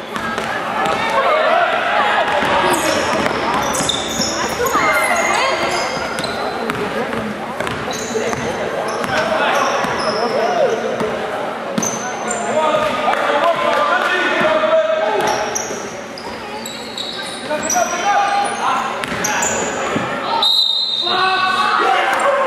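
Basketball game on a hardwood gym court: the ball bouncing, sneakers squeaking, and players and spectators calling out and chattering, all echoing in the hall.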